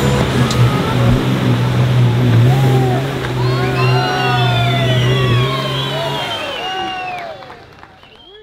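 Off-road pickup's engine running at a steady pitch as it churns through a deep mud pit, with spectators shouting and cheering over it from a few seconds in. The sound fades out at the end.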